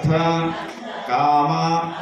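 A male voice chanting a Sanskrit puja mantra in two held, evenly pitched phrases.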